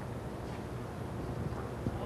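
Steady low background hum and hiss of a tennis court between points, with no voices and one faint tap near the end.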